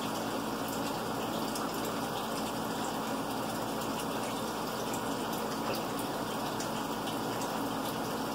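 Kitchen faucet running steadily into a sink.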